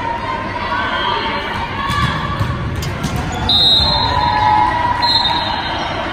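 Volleyball game sounds echoing in a large gym: balls thudding off hands and the hard court, with players and spectators calling out in the background.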